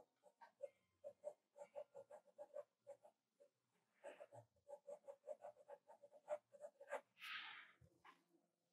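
Faint graphite pencil scratching on paper on an easel board: quick, short hatching strokes, about five a second, in runs with brief pauses, as shading is laid in. A longer, louder rustle comes near the end.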